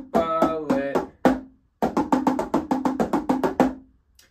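Marching tenor drums (quads) struck with sticks, the strokes sweeping across drums of different pitch. A first short run, a brief pause just past a second in, then a faster, even run of about seven strokes a second that stops shortly before the end.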